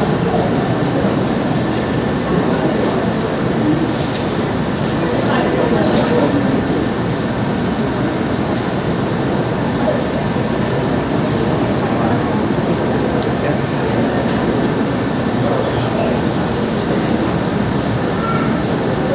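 Audience applauding steadily, with voices mixed into the clapping.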